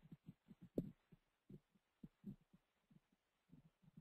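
Near silence: faint room tone with scattered soft low thumps and one slightly sharper click a little under a second in.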